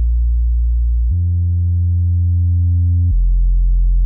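Minimoog Model D app playing its 'Kraft Bass' preset: a low, dark synth bass line of three held notes. It steps up to a higher note about a second in and drops to a lower one about three seconds in.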